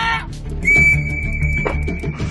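One long, steady blast on a handheld whistle, starting under a second in, over background music.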